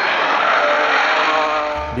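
Porsche 911 GT3 RS flat-six engine running at speed on track, its pitch dipping briefly and then climbing again as it accelerates, under a heavy hiss of tyre and wind noise.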